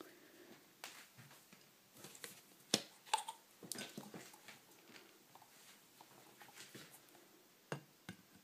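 Faint handling sounds: a scattering of light knocks and taps as mandarin peel halves are set down on a ceramic plate and the plate is touched. The sharpest tap comes about three seconds in, with another near the end.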